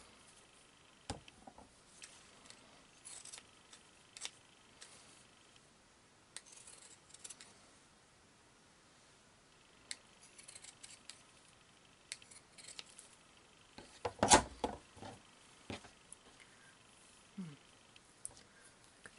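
Pinking shears snipping through felt in short, scattered cuts, with a louder clatter late on.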